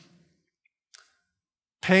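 A man's speaking voice pausing mid-sentence: near silence broken by a single faint click about a second in, then his speech resumes near the end.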